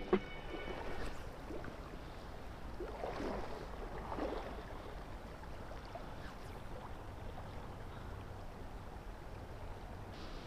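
Steady rush of a shallow river's current flowing over a gravel bed, with a few faint, louder patches of rustling about three to four seconds in.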